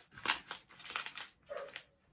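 Plastic chocolate-bar wrapper crinkling in the hands in several short bursts.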